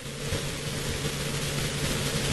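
Steady outdoor background hiss from the match sound, with a low steady hum beneath it.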